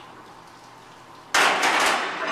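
A 480 lb plate-loaded barbell racked into the power rack's hooks: a sudden loud metal clash about a second and a third in, with the plates rattling for a moment after.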